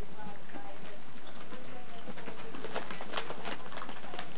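Ferrets scurrying through a crinkly clear plastic play tube: scattered rustles and light clicks, loudest about three seconds in, over a steady hiss, with a few faint soft calls in the first second.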